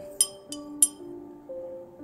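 A metal teaspoon clinks twice against a ceramic mug while stirring, sharp and ringing, about a fifth of a second and just under a second in, over soft background music with held tones.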